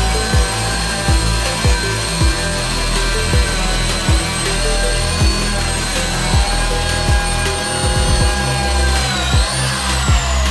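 Makita 1902 electric hand planer with a helical carbide-insert cutter head running and cutting along a board edge: a steady high whine that dips in pitch near the end. Background music with a steady beat plays over it.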